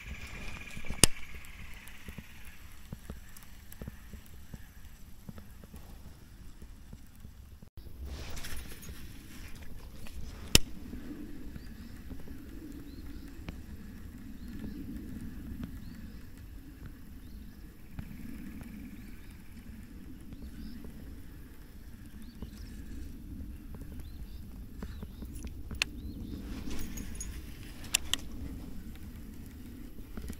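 Baitcasting reel being cranked to retrieve a lure, a low uneven whir from about eight seconds in, with a sharp click about a second in and another about ten seconds in. A low rumble of light wind on the microphone runs under it.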